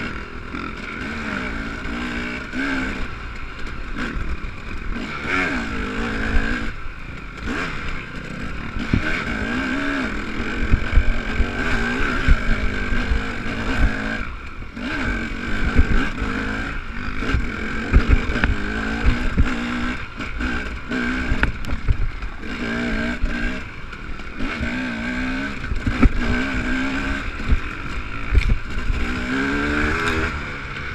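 Dirt bike engine revving up and down as it rides a rough trail, with knocks and clatter from the bumps.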